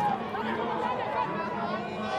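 Spectators at the trackside talking and calling out, many voices overlapping into chatter, over a steady low hum.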